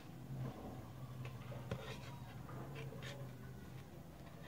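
Faint handling sounds: small clicks and scratches of wires being pushed into a plastic terminal connector, over a low steady hum.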